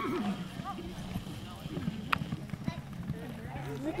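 Hoofbeats of a grey Quarter Horse galloping on arena sand through a barrel pattern, with faint voices in the background and one sharp click about halfway through.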